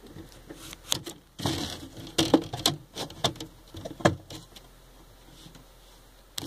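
Handling noise at a cockroach enclosure: a quick irregular run of knocks, clicks and rattles, the loudest about two and four seconds in, dying away after about four and a half seconds.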